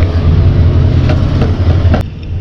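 A loud, steady low rumble of running machinery, such as an engine or a large fan, with a few light clicks over it.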